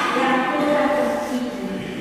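Voices of a church congregation praying aloud together in a drawn-out, chant-like unison recitation. The held notes change pitch only slowly.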